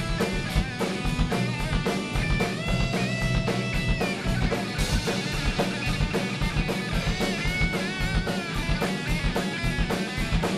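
Rock band playing an instrumental passage: an electric guitar plays a lead line with long held notes and pitch bends over steady drum-kit beats and bass guitar.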